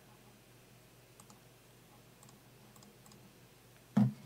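Faint computer-mouse clicks, several in quick pairs, from about a second in, over a quiet room background. A single loud low thump at the very end.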